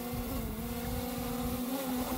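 DJI Air 3 quadcopter drone hovering close overhead, its propellers making a steady whine that dips slightly in pitch about half a second in, with wind rumbling on the microphone.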